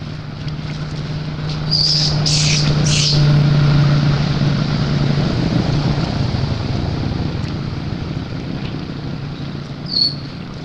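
Baby macaque giving three shrill, high-pitched screams about two seconds in, and one short squeal at the end. Under them runs a steady low hum and rumble that swells and fades.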